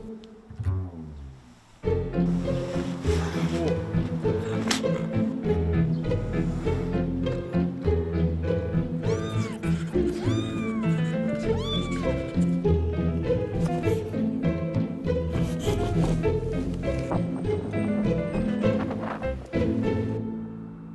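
Background music, and over it a kitten mewing three times in quick succession around the middle, each a short high call that rises and falls.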